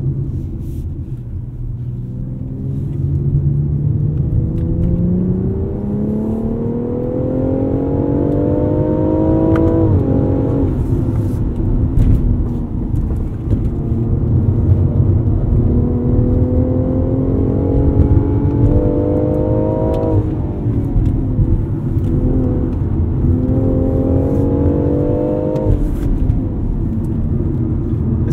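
A 2019 BMW X4 M40i's turbocharged 3.0-litre inline-six is accelerating, heard from inside the cabin. Its note climbs steadily for several seconds, then falls back sharply about ten seconds in, again about twenty seconds in, and once more near the end, climbing again after each drop.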